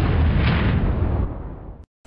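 Explosion-like boom sound effect under a title card: a loud rush of noise fading slowly, then cut off suddenly near the end.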